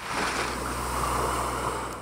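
Small waves washing up onto a sandy beach, a steady surf hiss with a low wind rumble on the microphone; it starts suddenly and fades out near the end.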